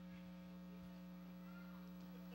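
Near silence with a steady low electrical hum and no other sound.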